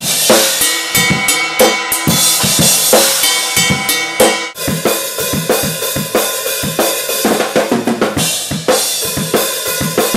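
Drum kit played hard in a studio take: a fast, steady beat of kick and snare under ringing cymbals, with a short break about four and a half seconds in.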